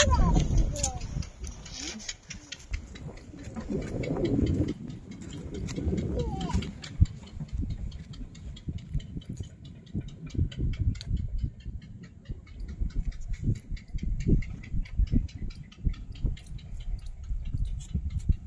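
Outdoor handheld recording. In the first few seconds there are brief voices and low wind rumble on the microphone. After that, a fast, even run of faint ticks sounds over low bumps.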